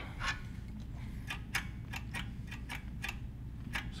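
Irregular sharp clicks and taps, about a dozen, from a hand tool working the throttle-linkage tab at the carburettor of a Tecumseh small engine, bending it so the throttle can reach wide open, over a low steady hum.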